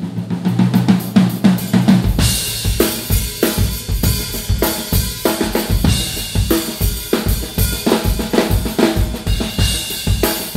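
Live jazz-rock playing: an amplified upright bass holds low notes that swell in level, then about two seconds in a Pearl drum kit comes in with kick drum, snare, hi-hat and cymbals in a steady groove under the bass.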